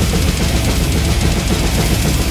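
Live death metal band playing at full volume: a drum kit pounding rapidly in the low end under distorted electric guitars, with no vocals.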